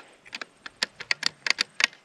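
A string of about a dozen small, sharp clicks at irregular intervals, like light tapping, with a faint low hum coming in during the second half.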